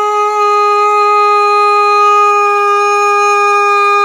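A man's voice holding one long, loud, dead-steady yelled note, a drawn-out ballpark fan's cheer, which breaks into sliding pitch just after it ends.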